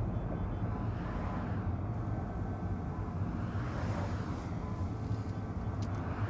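Steady low rumble of a moving car heard from inside the cabin, road and engine noise, with a faint swell of hiss midway.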